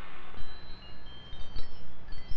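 Title-sequence music: high, tinkling chime-like notes scattered one after another over a faint low hum, as a big chord fades away.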